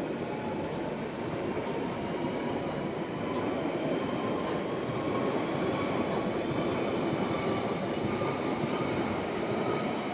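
London Underground 1992 Stock train departing and gathering speed, its wheels running over the pointwork in a steady rumble with a faint whine rising in pitch.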